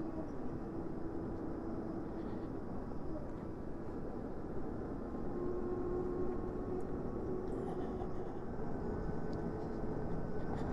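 Steady wind and tyre noise from a Zero SR electric motorcycle being ridden, with a faint thin whine from its electric drive that changes pitch a couple of times.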